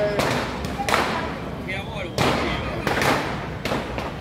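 About five loud, sharp firecracker bangs at uneven spacing, each with a short echo, amid crowd voices.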